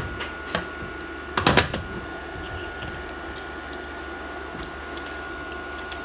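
A few light clicks and, about one and a half seconds in, a short clatter of knocks as a printed circuit board with soldered parts is handled and turned over on a silicone work mat, over a steady background hum.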